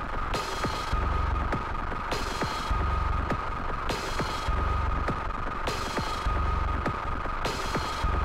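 Live-coded electronic music from TidalCycles: a steady high drone over a deep bass pulse that returns about every second and three quarters, alternating with bright bit-crushed noise, with a run of sharp clicks throughout.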